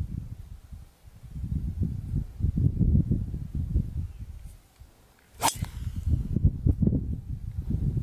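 Wind buffeting the microphone in gusts, then, about five seconds in, a single sharp crack of a driver striking a golf ball off the tee.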